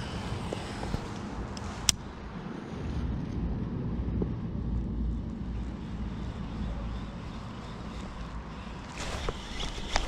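Low, steady rumble of wind on the microphone, with a single sharp click about two seconds in and a few faint ticks near the end.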